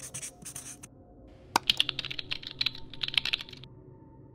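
Marker pen writing on a drawing surface: two short scratchy strokes at the start, then after a pause a quick run of scratchy strokes and sharp taps from about a second and a half in until shortly before the end.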